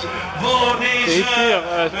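A man speaking in Dutch, the race commentary, filling the whole stretch with no other sound standing out.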